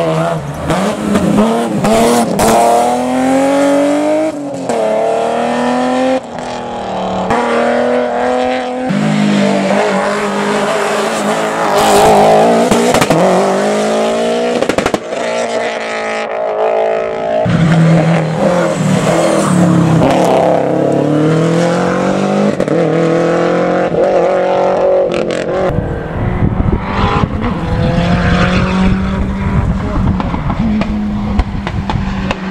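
Hillclimb race car engines revving hard as several cars run the course in turn. Each engine note rises in pitch through a gear, then drops back at the shift.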